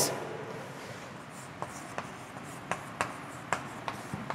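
Chalk writing on a chalkboard: a string of short, sharp taps and scratches as letters are written, starting about one and a half seconds in.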